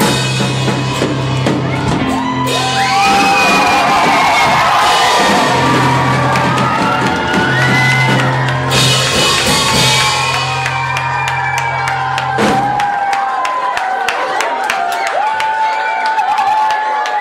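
Live pop song from a small amateur band: drum kit, electronic keyboard and electric guitar, with singing voices over them. The low bass notes stop about three-quarters of the way through, leaving the voices and drum hits.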